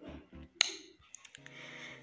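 Background noise from elsewhere in the house: faint low thuds in a regular beat, then a single sharp click just after half a second in, a few lighter clicks, and a low steady hum near the end.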